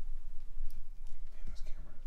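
An indistinct voice in the background over a low, steady rumble.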